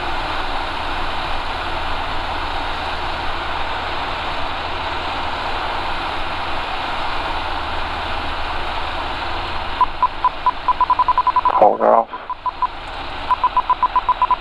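Steady engine, propeller and airflow noise in the cockpit of a Van's RV-6A on final approach, heard over the headset intercom. From about ten seconds in, a rapid electronic warning beep pulses several times a second, breaks off briefly and starts again as the plane comes down to the runway.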